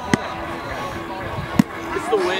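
A ball being caught or struck with two sharp smacks about a second and a half apart. Outdoor crowd chatter runs underneath.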